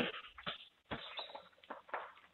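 A few faint, scattered clicks and knocks as an inflatable vinyl clown is reached for and picked up at a doorway.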